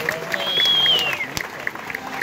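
Schuhplattler dancers clapping their hands in a fast, even rhythm, about six claps a second. A high falling call sounds over the clapping about half a second in.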